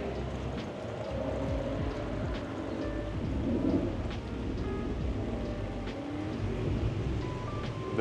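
Steady rain, with drops now and then ticking close to the microphone. Faint music and a low rumble run underneath.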